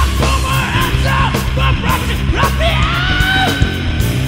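Doom metal band playing: a dense, heavily sustained low end of distorted guitars, bass and drums, with a high lead line that bends in pitch and holds one long note in the second half.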